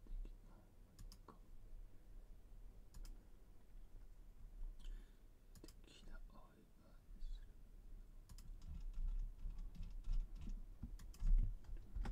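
Computer keyboard keys and mouse clicks, scattered at first, then coming in a quicker run from about eight seconds in, over a low steady hum.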